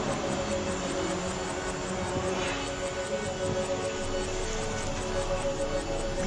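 Background music of steady, sustained held tones, with no clear beat.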